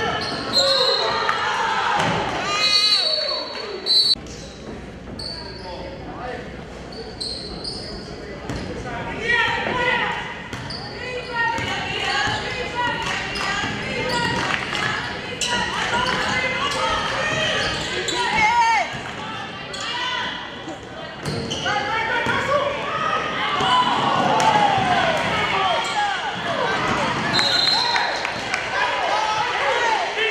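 Basketball game in play in an echoing gymnasium: the ball bouncing on the hardwood court, sneakers squeaking in short high chirps, and players and spectators shouting throughout.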